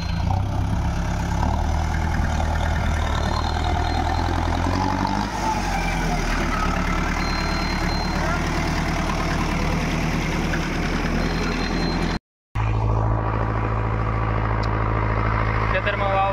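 Mahindra Arjun tractor's diesel engine running as the tractor is driven over the field; its note changes about five seconds in. After a short break about twelve seconds in, it runs on steadily.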